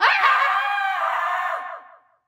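A young woman screaming: one long, high scream that starts suddenly and trails off with falling pitch near the end.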